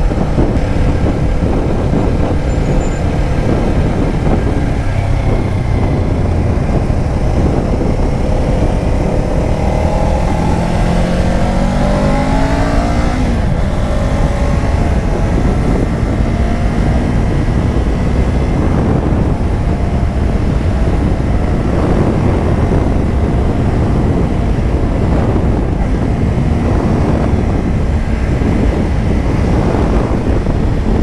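A Kawasaki Ninja 500's parallel-twin engine runs at road speed under a steady rush of wind on the microphone. Around the middle it climbs in pitch for a few seconds under acceleration, then drops suddenly at a gear change.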